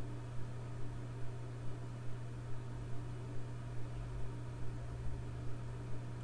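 A steady low hum with soft, evenly spaced thuds about two and a half times a second.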